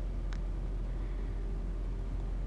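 A steady low background hum, with one faint click about a third of a second in.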